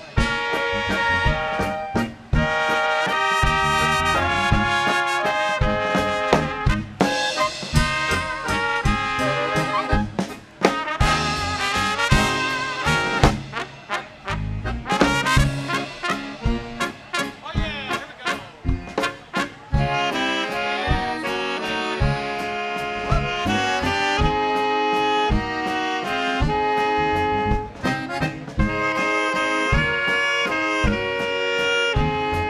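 A Czech-style polka band playing a waltz, led by brass horns over a regular drum beat.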